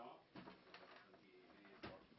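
Near silence: faint background voices and a few soft clicks, the strongest just before the end.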